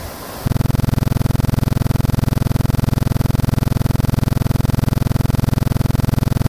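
A loud, harsh electronic buzz with a rapid, even flutter, starting abruptly about half a second in.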